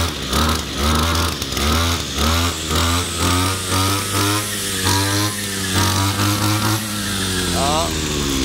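Hitachi 33 cc two-stroke brush cutter running with its circular blade spinning, held below full throttle. The engine note swells and dips about twice a second, and its pitch falls near the end as it slows.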